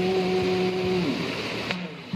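A man's sung note held steady at the end of a line over a constant hiss, fading out a little over a second in; a faint pluck or click near the end.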